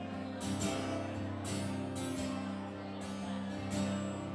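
A live band's guitars, acoustic and electric, playing a slow strummed instrumental passage of a country ballad, without singing. Evenly spaced strums over steady held notes.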